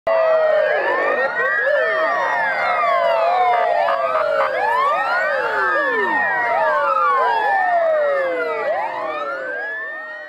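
Many police car sirens wailing at once, out of step with each other, so their rising and falling pitches overlap in a continuous tangle. The sound fades away near the end.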